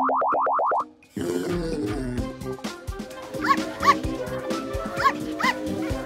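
A springy cartoon 'boing' sound effect warbles rapidly, about ten rising chirps in the first second. Then cheerful cartoon background music plays, with a small puppy's short yips over it in two quick pairs.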